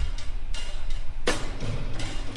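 Programmed hip-hop drum beat playing back: a low kick at the start, a reverb-heavy layered snare hit about 1.3 s in, and a time-stretched hi-hat loop ticking over the top.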